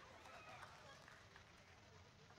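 Near silence: faint room tone with a faint voice in the background.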